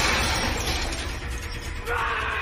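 Action-film fight soundtrack: music under metallic rattling and clanking as a wire-mesh cage door is yanked, with sharp clicks late on and a man's shout starting near the end.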